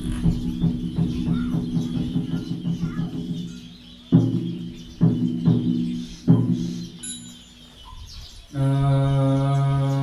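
Buddhist ritual percussion: a fast run of taps over a steady ringing that dies away over the first three seconds, then three single ringing strikes about a second apart. About 8.5 s in, a group of voices starts chanting in unison.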